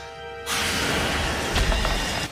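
Loud rushing whoosh of a cartoon sound effect that cuts in suddenly about half a second in, with a low thump near the end, over background music.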